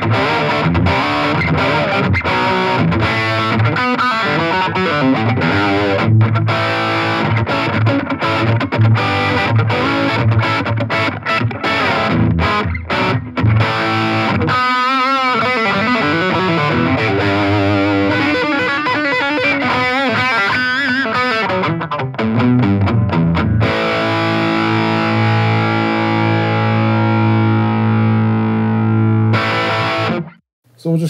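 Electric guitar with heavy distortion played through a Line 6 Catalyst 60W modelling combo amp on its high-gain setting: busy riffing and lead lines, with a short break about halfway. It ends on a chord held for about six seconds that is cut off near the end.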